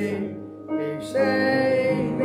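Congregation singing a hymn with instrumental accompaniment, sustained notes with a brief break between lines shortly after the start before the next phrase comes in.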